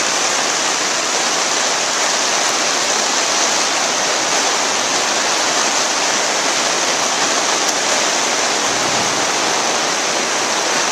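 Steady rain falling in a forest: an even, loud hiss that holds without a break, with no single drops standing out.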